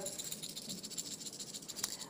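A strand of Stardust rondelle beads being shaken, the beads rattling against each other in a fast, fine clatter.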